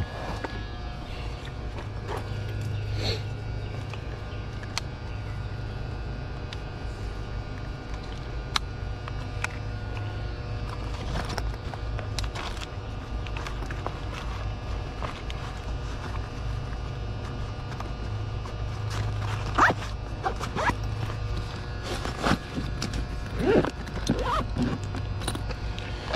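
Steady low electrical hum from an air-conditioning condenser unit, with scattered clicks of tools being handled. Near the end, rustling and a zipper as a tool bag is opened.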